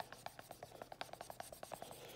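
Faint dry-erase marker squeaking on a whiteboard while drawing lines: a quick run of short squeaks, about ten a second.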